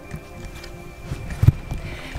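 Wind buffeting the camera's microphone, a low rumble with knocks from handling the camera. There is one loud thump about a second and a half in, as background music fades out.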